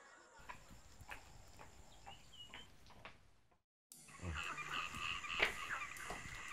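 Faint animal ambience: scattered soft ticks and a single high chirp, then after a brief dropout a steady run of repeated short, high chirping calls, with one sharp knock about a second and a half later.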